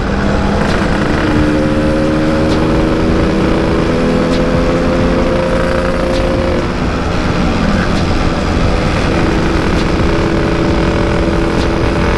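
Yamaha RX-King's two-stroke single-cylinder engine running at a steady cruising pitch under way, with wind rushing over the microphone. The engine note drops briefly a little past the middle, then holds steady again.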